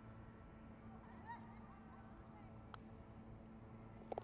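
Near silence outdoors, with faint, distant honking calls of geese about a second in and again past the middle. There is a single faint sharp click near three-quarters of the way through.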